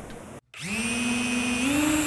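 Small electric single-wing drone modelled on a maple samara, its motor and propeller giving a steady whine as the craft spins; the pitch steps up a little past halfway.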